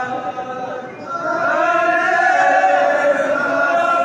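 A group of men chanting together. A held note dies away about a second in, then the voices come back louder, singing a line that rises and falls in pitch.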